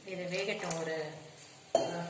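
A few spoken words, then near the end a single sharp metal clink: a spoon knocking against the stainless-steel kadai of bhaji.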